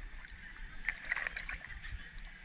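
Water lapping and splashing as a sea turtle's flippers stir the surface beside a rock, with a brief cluster of small crackling splashes about a second in.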